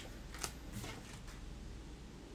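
Tarot cards being handled at a table: one sharp click of a card about half a second in, then faint rustling of the deck.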